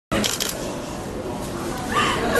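A distressed young woman crying and whimpering amid voices, with a few sharp knocks of handling noise in the first half second.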